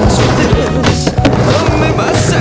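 Skateboard wheels rolling across a plywood halfpipe, heard under background music with a beat.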